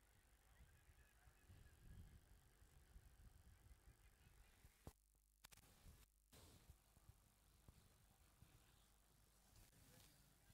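Near silence: faint background hiss from the broadcast feed, cutting out completely twice for a fraction of a second about halfway through.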